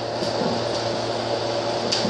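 Electric food dehydrator running, its fan giving a steady whirr over a low hum while it dries sliced bananas.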